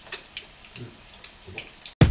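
Quiet kitchen background with a few faint, scattered light clicks.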